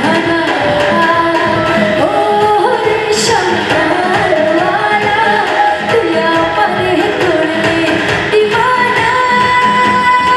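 A woman singing a song into a microphone with a live band of keyboard and electric guitar, over a steady beat. A long note is held near the end.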